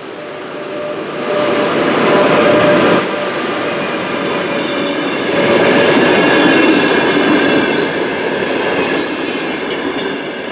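Intercity train hauled by an Sr1 electric locomotive passing close as it leaves the station. The noise swells about a second in and is loudest around two to three seconds, as the locomotive goes by. The coaches then rumble and clatter over the rail joints, swelling again around six seconds.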